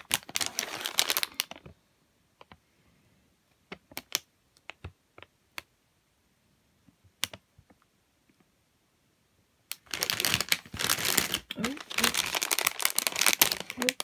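Clear plastic bags around model-kit parts runners crinkling as they are handled. There are two bouts of crinkling, one at the start and one from about ten seconds in, with scattered light clicks and ticks between them.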